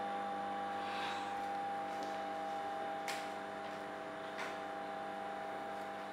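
A steady electrical hum in several even tones, with two faint clicks, about three seconds in and again near four and a half seconds.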